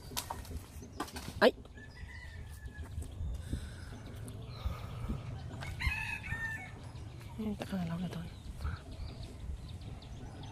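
Domestic chickens calling, with a rooster crowing, over low outdoor background noise. A few sharp knocks come in the first second and a half, the loudest about a second and a half in.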